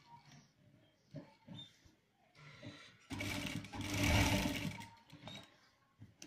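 Sewing machine stitching a patch pocket onto a shirt front in one short run of about two seconds, starting about three seconds in and stopping before five. A few light clicks of the cloth being handled come before it.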